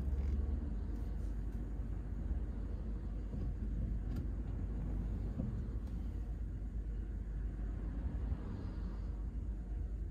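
Steady low rumble inside a stationary Ford car's cabin: its engine idling while it waits in traffic.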